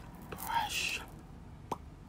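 A woman's brief soft whisper or breath about half a second in, then a single light click from the lips near the end.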